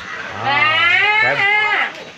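A low adult voice drawing out the word "crab" in one long, wavering call of about a second and a half.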